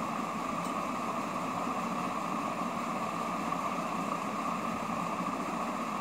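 Steady background noise: an even hiss with no distinct events.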